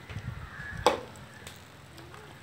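Metal spatula stirring chicken curry in a metal pot, with one sharp clank against the pot a little under a second in and a few light ticks after.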